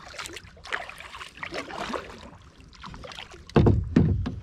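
Water lapping and dripping against a kayak hull in a run of small splashes, with a loud low thump near the end.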